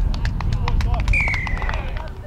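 Spectators clapping after a try, with one high drawn-out cheer about a second in, falling slightly in pitch.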